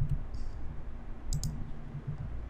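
Two quick clicks of a computer mouse about a second and a half in, over a low steady background hum.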